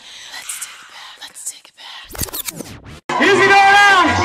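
Brief sweeping scratch-like effects, then, after a short dropout about three seconds in, a loud amplified voice holding a note through a microphone in a club.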